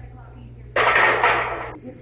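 A loud metal clatter of a loaded barbell and its iron plates against a steel squat rack. It starts sharply about a second in and fades over about a second.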